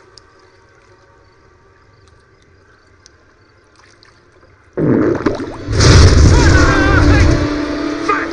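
Faint outdoor quiet, then about five seconds in a sudden loud blast with a deep rumble that swells again a second later, with high wavering cries or squeals over it.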